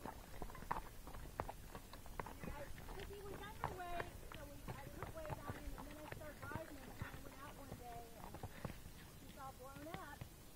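Horse hooves clopping at a walk on a dirt trail, Tennessee Walking Horses, under people's voices talking through much of the time.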